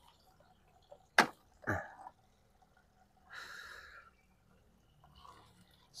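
Handling of a freshly uprooted Podocarpus and its soil-caked root ball: a sharp tap about a second in, a dull knock just after, and a short rustle of soil and foliage around the middle.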